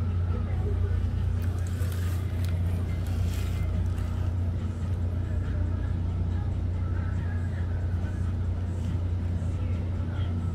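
Steady low mechanical hum with no change in pitch or level, like a motor or machine running nearby.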